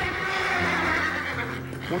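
A horse whinnying, a drawn-out call lasting nearly two seconds.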